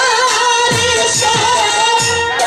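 A woman singing a Bengali jatra pala folk song into a microphone, her melody wavering, over musical accompaniment with low drum strokes that slide down in pitch about two to three times a second.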